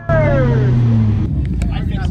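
LS V8 engine of a BMW E30 drift car heard from inside the cabin, loud, its pitch falling over the first second as the revs drop, then a lower steady rumble.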